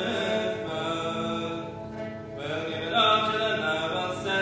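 Slow droning music on accordion, bowed cello and a small wooden keyboard instrument: long sustained chords that swell and ease, dipping briefly about two seconds in and swelling loudest just after three seconds.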